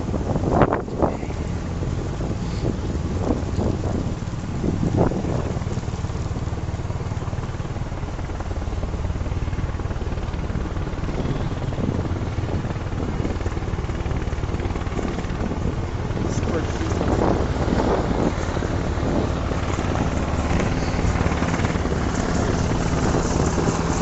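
Black Hawk helicopter running steadily, a low continuous rumble of rotor and engine with wind on the microphone; it grows a little louder in the second half.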